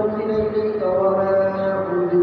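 A man chanting devotional recitation into a microphone in long, drawn-out held notes. The pitch moves to a new sustained note a little under a second in.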